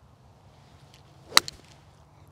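Golf iron striking a ball once: a single sharp crack about one and a third seconds in, followed by a fainter tick just after.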